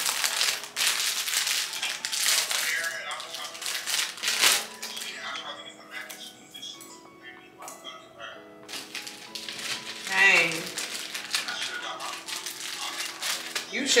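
Crinkling and clicking of small plastic packets being handled and packed, busiest in the first few seconds and again near the end, over soft background music with held, stepping notes.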